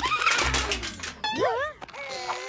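Cartoon sound effects: a dense, noisy scramble for about a second, then a cartoon character's wavering vocal cry that rises and falls twice, ending in a short click.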